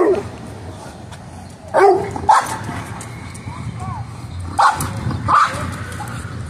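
Dog barking and yipping excitedly in short calls, two pairs about three seconds apart.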